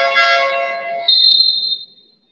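A second of overlapping high squealing tones, then a referee's whistle blown once with a shrill steady note for just under a second.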